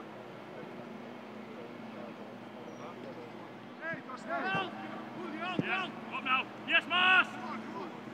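Footballers' shouts and calls on a training pitch, starting about halfway through and getting louder, over a steady low hum. A few short thuds come among the shouts.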